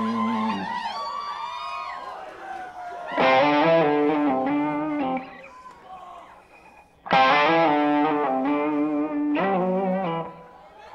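Electric guitar played through distortion and effects pedals, without drums: swooping pitch bends over the first couple of seconds, then loud sustained chords with a wavering vibrato struck about three seconds in and again about seven seconds in, each ringing for about two seconds before cutting off.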